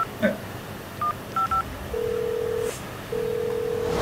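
Phone keypad tones: one short beep, then two quick dual-tone beeps, followed by two steady low beeps about a second long each, separated by a short gap, like a line tone after dialing.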